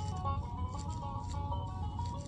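Animated plush elephant toy playing a simple electronic tune of stepping single notes while its ears flap, with a low steady hum underneath.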